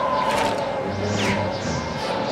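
Cartoon background music over a rushing, whooshing air sound effect from a vacuum cleaner running on super suction, with a short laugh near the start.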